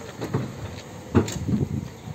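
Linde R14 electric reach truck working at a steel pallet box, its forks being lowered: low irregular clunks and knocks, with one sharper knock a little over a second in.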